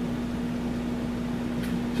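Steady room hum with one constant low tone, heard in a pause between sentences.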